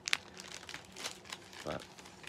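Plastic outer sleeve of a vinyl LP crinkling as the album is handled and moved: a sharp crackle just after the start, then scattered smaller crinkles.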